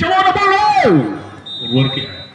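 A man's loud drawn-out vocal exclamation that falls sharply in pitch at its end, followed by a thin steady high-pitched tone in the second half.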